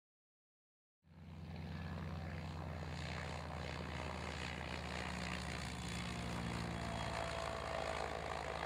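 The propeller of the e-Genius battery-electric aircraft, driven by its electric motor, running steadily during takeoff. The sound cuts in suddenly about a second in and holds at an even level.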